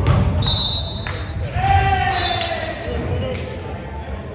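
Indoor volleyball game: a few sharp ball hits ring out in a large gym, with players' voices calling out between them.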